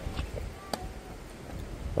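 Wind rumbling on the microphone, with a single sharp knock just under a second in.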